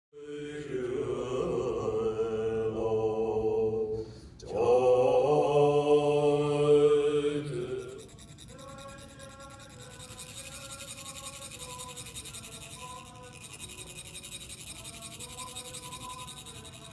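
Deep-voiced chanting of Tibetan Buddhist monks, two long held phrases with strong overtones, fills the first half. It then drops away to faint held tones, and from about ten seconds a fine, rapid rasping sets in: metal chak-pur funnels being rubbed to trickle coloured sand onto the mandala.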